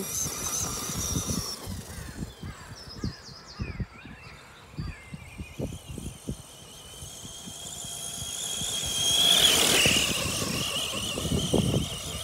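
FTX Outlaw RC monster truck's electric motor and drivetrain whining at full throttle on grass, the high pitch gliding up and down as it speeds up and slows. The whine swells to its loudest about nine to ten seconds in, with scattered short low thumps throughout.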